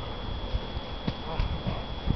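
A handful of irregular hollow knocks and thumps, about five in two seconds, over a faint steady high-pitched tone.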